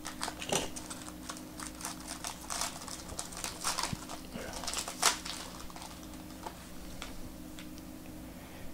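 Silver foil trading-card pack being torn open and unwrapped by hand: a run of sharp crinkling crackles for about five seconds, then sparser rustles as the cards are handled.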